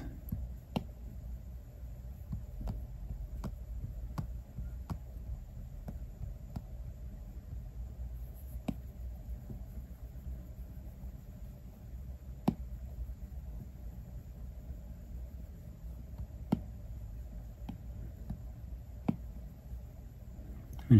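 Apple Pencil tip tapping down on the iPad Pro's glass screen: sharp single clicks at irregular intervals, one every second or few, over a low steady hum.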